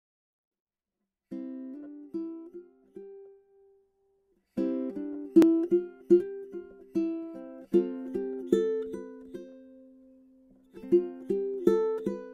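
Instrumental intro to a calm children's song, played as picked notes and chords on a plucked string instrument. It starts about a second in and pauses briefly around four seconds before carrying on.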